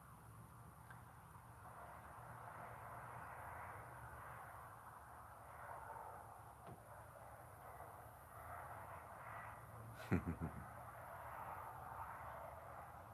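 Faint steady background noise, broken about ten seconds in by a short burst of three or four quick sounds.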